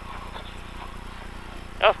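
Lada VFTS rally car's engine and road noise, heard steady and fairly low from inside the cabin while driving a stage.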